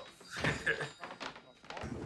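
Shop-door bell dinging with a thump about half a second in, over voices talking, from a film soundtrack.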